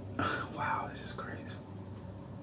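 A man whispering softly: a few breathy, unvoiced syllables in the first second and a half, then only quiet room noise.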